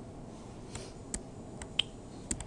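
A few quiet, sharp clicks from a computer's keys or mouse in the second half, over faint room tone.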